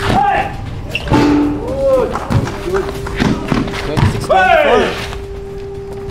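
A basketball bouncing and thudding on an outdoor court amid scattered impacts from play, with short wordless shouts and exclamations from players and onlookers rising and falling over a steady background tone.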